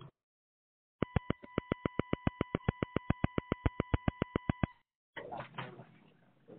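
An electronic tone on the conference-call line with a rapid, even clicking, about eight clicks a second. It starts about a second in and cuts off after nearly four seconds.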